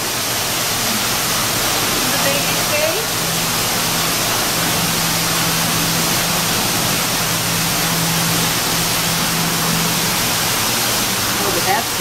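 Steady, loud rushing noise, with a low steady hum from about two seconds in until about ten seconds in. Faint voices in the background.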